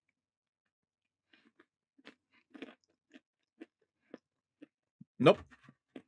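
A person chewing crunchy nuts: a run of short, sharp crunches about twice a second, followed near the end by a single spoken word.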